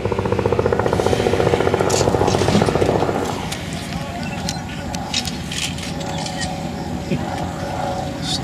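A boat engine running steadily, with a rapid, pulsing sound over it that stops about three seconds in.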